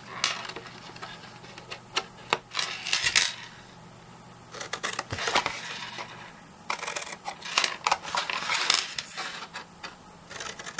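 Scissors snipping through cardstock in short, sharp cuts, with the card being handled between cuts. There are two runs of quick snips, one about two seconds in and a longer one in the second half.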